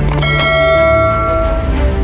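A single bell chime, a notification 'ding' sound effect, struck just after the start and fading out over about a second and a half, over a low sustained tone of background music.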